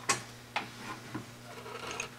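Cloth rag rubbing over the metal spindle nose of a lathe as it is wiped clean, with about three light knocks, the loudest right at the start.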